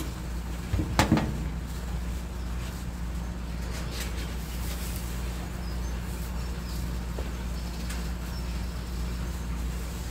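Dry sphagnum moss rustling softly as handfuls are dropped and pressed into a plastic tray, over a steady low hum. A single sharp knock comes about a second in.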